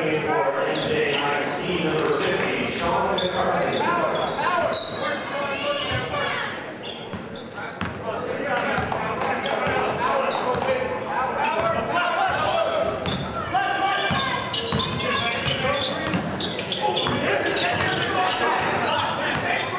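A basketball dribbled on a hardwood gym court, with quick knocks and squeaks, amid indistinct shouting and chatter from players and spectators echoing in a large hall.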